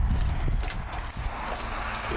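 A bunch of keys jangling and clicking in the lock of a corrugated metal container door as it is unlocked, over a low rumble.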